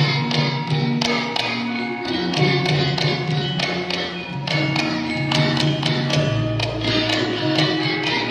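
Javanese gamelan ensemble playing: bronze metallophones and gongs struck in a quick, even rhythm, their tones ringing on under the strokes.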